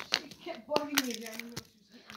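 A child's voice, without clear words, with a few sharp clicks from plastic Easter egg shells being handled, one near the start and two about a second in.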